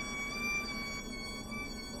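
Diamond DA40 stall warning horn sounding one steady high tone as the plane slows into a power-off stall, with power at idle. The tone fades out near the end.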